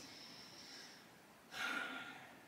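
A woman's short intake of breath about one and a half seconds in, after a second of faint room tone.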